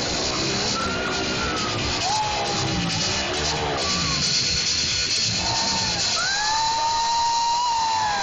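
Loud music with motorcycle engines revving in a Globe of Death, their pitch rising and falling as the bikes circle, two engines heard at once near the end.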